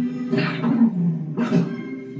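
Soft film score playing sustained low notes, with two short, rough vocal or animal sounds about a second apart.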